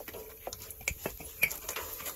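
Gloved hands working a new cab air bag and its metal mounting piece into place, giving irregular small clicks and knocks of metal and rubber being handled.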